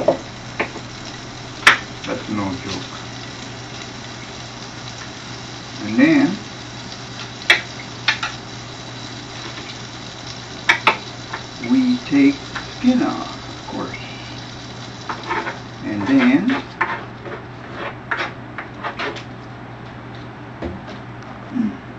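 Garlic being smashed and peeled on a wooden cutting board: a few separate sharp knocks over a steady low hum, with brief mumbled words now and then.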